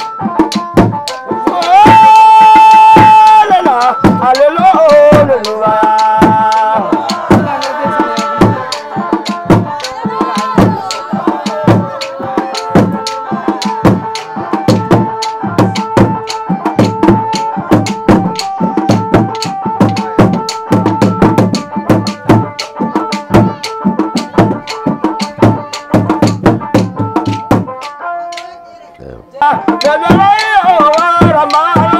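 Sharara dance music: upright drums beaten in a steady, fast rhythm under held tones and voices, with a loud held note about two seconds in. The drumming breaks off briefly near the end, then starts again.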